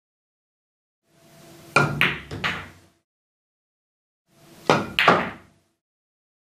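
Two pool shots about three seconds apart, each a quick run of sharp clicks and knocks: the cue tip striking the cue ball, ball clacking against ball, and the object ball dropping into a pocket.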